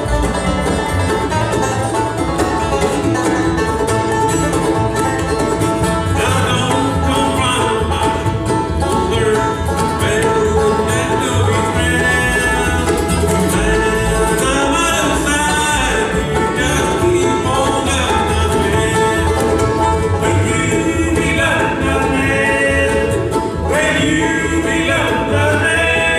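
Live bluegrass band playing, with banjo, acoustic guitar and upright bass, and voices singing from about six seconds in.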